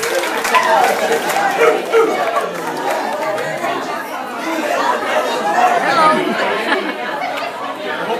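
Crowd chatter: many people talking over one another in a crowded room.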